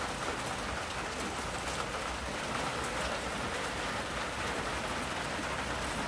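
Rain falling steadily, an even, unbroken hiss of drops.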